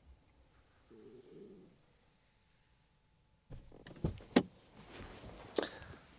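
A few sharp clicks and knocks with some rustling from someone moving at an open car door, starting after a near-silent stretch of a few seconds.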